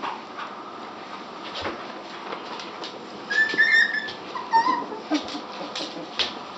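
West Highland White Terrier puppy whimpering: a high whine about three and a half seconds in and a shorter one about a second later, with scattered light clicks.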